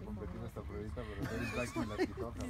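A horse whinnying, a high wavering call in the second half, over background talk.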